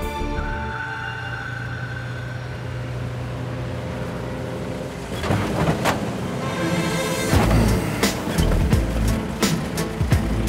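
Background music over a light aircraft landing; about halfway in, a louder, rough rumble with sharp knocks sets in as the Piper J3 Cub's wheels come down onto the grass runway.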